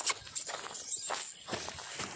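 Footsteps and goat hooves crunching and rustling on dry crop stubble, several uneven steps.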